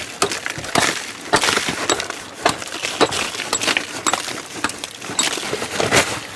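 A hand tool swung at a rock column, striking rock about twice a second with sharp metallic clinks and smaller clicks of broken rock between the blows.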